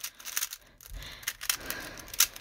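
Plastic clicking and clacking of a Rubik's brand 3x3 cube being turned by hand, many quick irregular layer turns; the cube turns roughly, described as "so bumpy".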